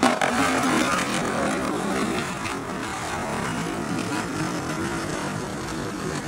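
A skateboard lands with a sharp slap on asphalt, then its wheels roll on with a steady rough rumble.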